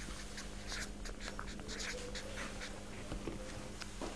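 Faint scratching of writing strokes, a run of short quick strokes as a figure is written or drawn, over a low steady hum.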